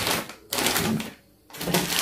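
Rustling and clatter of packaged products being handled and rummaged through, in three short bursts of about half a second each.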